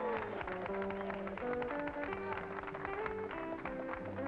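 Instrumental country music from a band led by acoustic guitar, a melody of short held notes over a steady strummed beat: the intro before the singing comes in.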